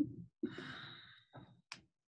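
A person's breathy sigh, fading over about a second, then a brief click near the end.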